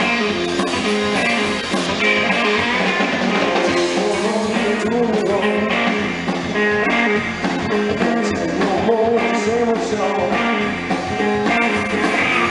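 A live rockabilly band playing a fast number: electric guitar, upright bass and drum kit, with a male voice singing.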